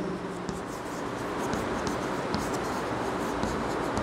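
Chalk writing on a chalkboard: an irregular run of short scratching strokes as a line of words is written out.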